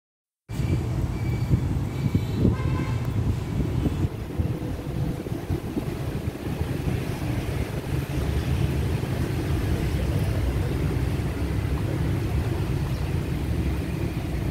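Steady low outdoor rumble, like road traffic or wind on the microphone, starting abruptly about half a second in. It carries a few short, high horn-like toots in the first three seconds.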